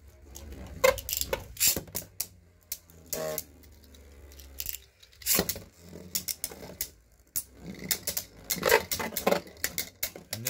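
Beyblade spinning tops clacking against each other and the plastic stadium walls in a battle: bursts of sharp plastic-and-metal clicks and rattles, loudest about five seconds in and over the last couple of seconds.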